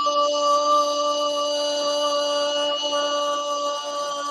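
A radio football commentator's long, held goal shout ('goooool'), one loud sustained note at a steady pitch, calling a converted penalty.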